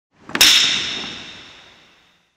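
Wooden clapper struck once: a sharp crack about half a second in, ringing away over about a second and a half in the hall.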